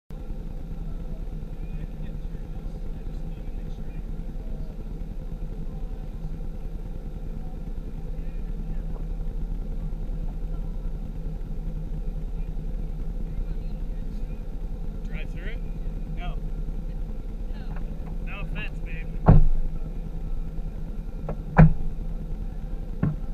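Vehicle engine idling steadily with an even low hum, and two loud sharp thumps near the end, a couple of seconds apart.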